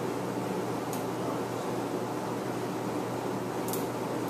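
Steady room noise: an even hiss with a low hum, and two faint short clicks, one about a second in and one near the end.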